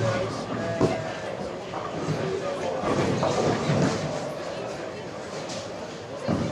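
Busy bowling-alley background: indistinct voices and general hall noise, with one sharp knock about a second in.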